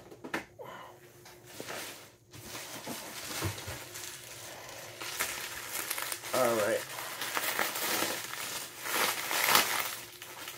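Plastic bubble wrap crinkling and rustling as hands pull it apart and off a boxed vinyl figure. It starts a few seconds in and grows louder toward the end.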